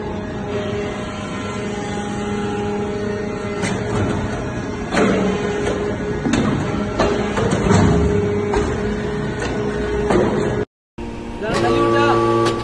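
Hydraulic briquetting press for metal chips running: a steady machine hum with scattered metal clunks and clatters, busiest from about five seconds in. The sound drops out briefly near the end, then a new stretch of steady running hum begins.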